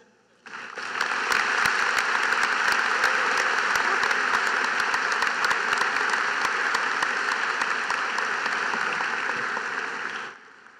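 Large crowd applauding in an arena. It starts about half a second in, holds steady, and fades out near the end.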